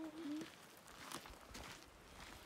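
Faint clicks and knocks as the trailer's large metal rear door is unlatched and swung open, after a voice holding one drawn-out note fades out in the first half-second.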